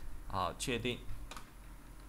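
A single sharp click of a computer keyboard key, a little past halfway, alongside brief muttered speech.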